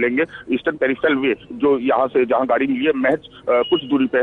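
Speech only: a man talking continuously over a narrow telephone line.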